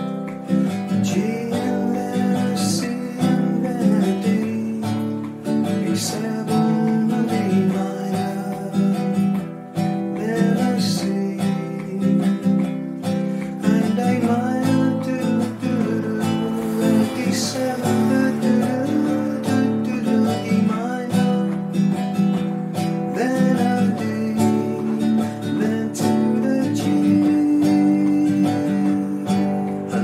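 Acoustic guitar strumming a slow chord progression in open position (G, C, D, B7, E minor), with a man's voice humming the melody over it.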